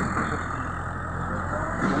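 Diesel engine of heavy machinery running steadily with a low hum.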